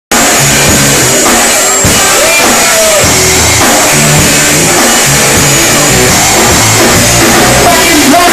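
Live rock band playing loudly: electric guitars, bass and drum kit, recorded close up and starting abruptly.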